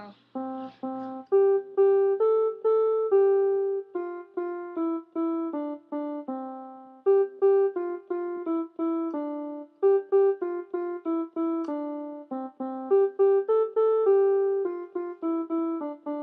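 Small electronic keyboard played in a piano voice, one note at a time: a simple single-line melody of separate, decaying notes, its opening phrase coming round again about halfway through.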